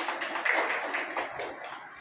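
People applauding, hand claps that die away toward the end.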